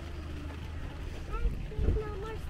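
Wind rumbling on the camera microphone, with two stronger buffets near the end, and faint voices in the background.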